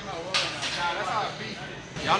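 Men talking quietly, with speech only and a low steady hum beneath.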